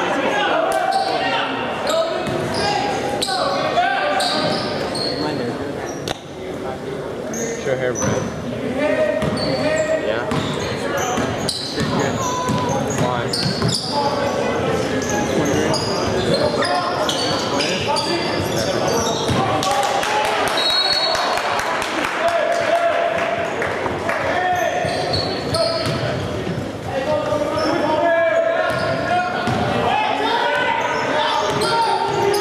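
Basketball game sounds in a large gym: a ball bouncing on the hardwood court, short high-pitched sneaker squeaks, and shouting from players, coaches and spectators, all echoing in the hall.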